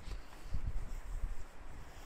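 Wind buffeting the camera microphone in uneven low rumbling gusts.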